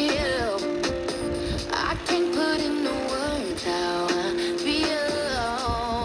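Music with a wavering sung melody playing from a portable FM radio tuned to a broadcast station.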